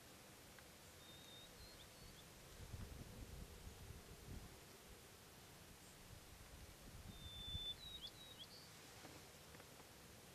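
Quiet brushland ambience: a bird sings two short whistled phrases, about a second in and again about seven seconds in, over faint low rumbling in the middle.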